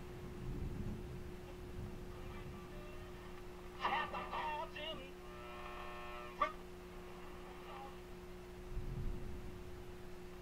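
AM radio being tuned across the band: short fragments of station audio, voice and music, fade in and out over a steady hum. A held tone comes in about halfway and ends in a sharp click.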